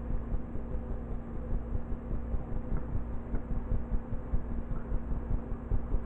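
A steady low hum over an uneven low rumble.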